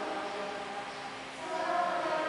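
Choir singing a hymn with long held notes; the sound dips just after the middle and a new phrase begins near the end.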